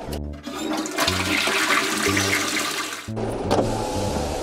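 A toilet flushing: a rush of water lasting about three seconds that cuts off suddenly.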